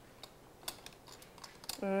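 A few light, scattered clicks of a fork tapping against a bowl and the tortas as pico de gallo is put on.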